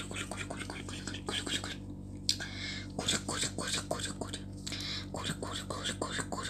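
A person whispering close to the microphone in quick, breathy bursts with mouth clicks, over a steady low electrical hum.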